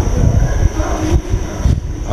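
Low, uneven rumbling noise with a couple of brief dips in level.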